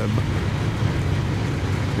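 Coal train rolling away down the track, a steady low rumble.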